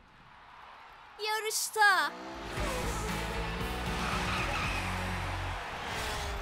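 Cartoon sound effect of a car speeding off with tyre skid noise and a low rumble, starting about two seconds in after a short vocal exclamation and stopping shortly before the end, with music underneath.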